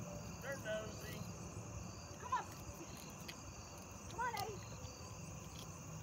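Crickets chirping steadily, a faint high trill repeating evenly, with three brief faint voice-like calls in the distance.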